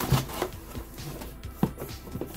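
Cardboard shipping box being handled by hand: a few short scrapes and knocks of cardboard flaps and box sides.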